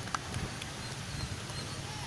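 Low outdoor background rumble with a sharp click just after the start and a few lighter knocks soon after, typical of a handheld camera being moved about.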